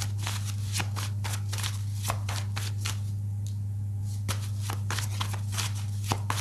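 A deck of tarot cards being shuffled by hand: a rapid, uneven run of crisp card flicks that pauses for about a second midway, then resumes. A steady low hum runs underneath.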